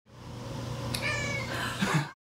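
A domestic cat meows once: a short call, falling in pitch, about a second in. A brief loud burst of sound comes near the end.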